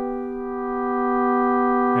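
Synth pad chord held unchanging by an Empress Echosystem delay pedal's freeze mode: a steady sustained drone of several notes that dips slightly and swells back.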